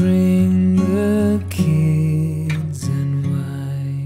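Acoustic guitar music: chords strummed about once a second over a held low bass note, in an instrumental passage of a soft song.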